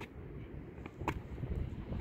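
Wind rumbling on the microphone, growing stronger near the end, with two brief sharp clicks about a second apart.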